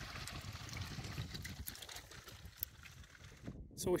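Water trickling in a shallow arroyo stream, a faint steady rush that cuts off about three and a half seconds in.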